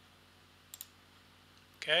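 Two quick clicks of a computer mouse, close together, a little under a second in, over a faint steady hum.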